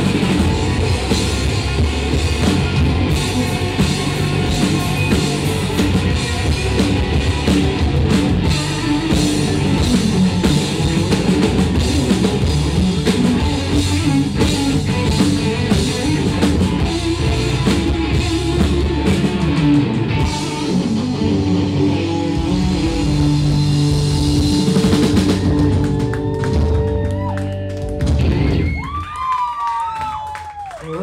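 Live rock band playing loud: distorted electric guitars over a drum kit. The song winds down a couple of seconds before the end.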